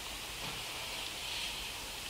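Steady hiss with no other sound: room tone and recording noise.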